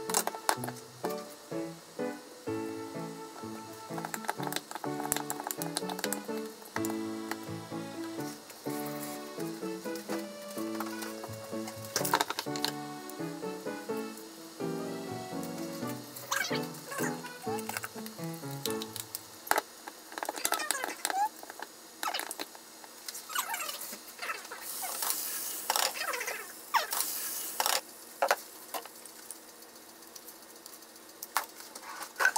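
Light background music over kitchen sounds: a knife tapping on a wooden cutting board and utensil clicks. About two-thirds of the way in the music stops, leaving clicks and short wet scraping sounds of food being mixed in a bowl.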